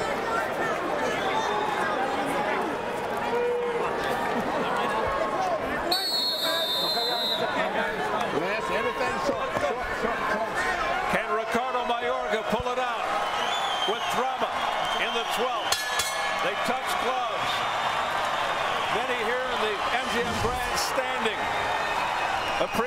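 Boxing arena crowd shouting and cheering, many voices at once, with scattered knocks. About six seconds in, a bright ringing tone lasts a second and a half: the ring bell starting the final round.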